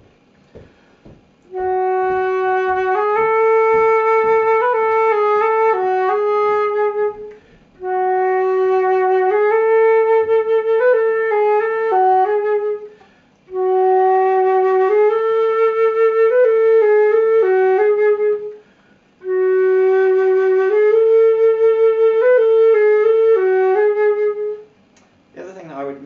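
Silver concert flute, a Trevor James Recital with a Flutemakers Guild of London headjoint, playing the same short melody four times with brief breaths between phrases. Each phrase is played in a different tone colour, trying shades between a dark sound and a hollow French sound.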